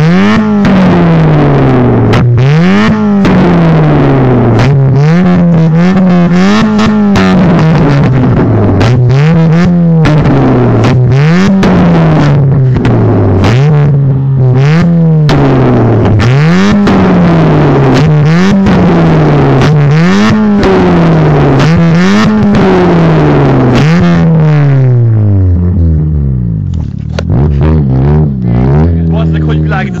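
Tuned, turbocharged Fiat Punto engine being revved hard in repeated blips, about one every two seconds, with sharp pops and bangs from the exhaust as it spits flames on the overrun. Near the end the revving stops and the engine settles to a steady idle.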